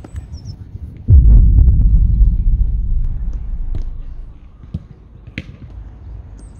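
Wind buffeting an outdoor phone microphone: a sudden low rumble about a second in that dies away over the next three seconds, with a few faint clicks after it.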